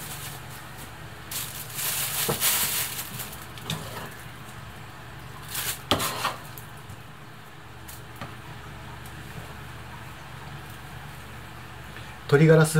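Thin plastic bag rustling in irregular bursts as pieces of raw chicken breast are put into it, with a sharp tap about six seconds in, over a low steady hum.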